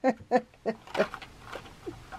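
A woman laughing quietly in a string of short, breathy chuckles.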